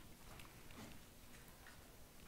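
Near silence: room tone with a few faint ticks.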